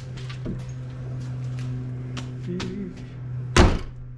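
Ford Bronco hood being lowered and shut, closing with a single loud slam about three and a half seconds in, after a few light clicks. A steady low hum runs underneath.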